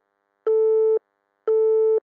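Telephone busy tone after a call is hung up: a steady pitched beep about half a second long, repeating once a second, heard twice.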